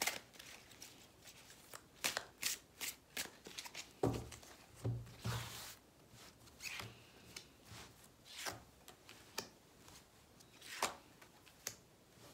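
A tarot deck being shuffled and handled, then cards drawn and laid down on a cloth-covered table: a string of short, soft card rustles and taps, the loudest about four to six seconds in and again near eleven seconds.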